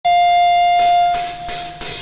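A steady high note with overtones is held and fades out over the first second. Meanwhile the rock drummer counts in with about four crisp cymbal or hi-hat strokes, roughly three a second, just before the band comes in.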